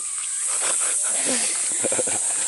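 A steady, high-pitched insect chorus, with brief voices and short noisy sounds over it.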